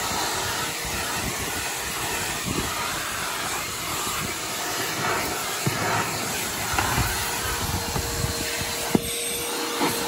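Hart 16-gallon, 6 peak HP wet/dry shop vac running steadily, sucking through its hose and floor nozzle over car carpet. A few light knocks come through, the sharpest about nine seconds in, and a faint steady whine joins near the end.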